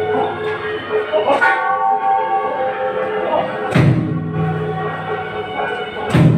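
Temple bell and drum struck in turn: a strike about a second and a half in with a long higher ringing, then a deeper booming strike near four seconds that hums on, over a background of music and voices.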